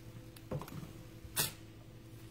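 Quiet kitchen handling sounds over a faint steady hum: a short soft knock about half a second in and a single sharp click about a second and a half in, as a small item is set down and the pan is taken up.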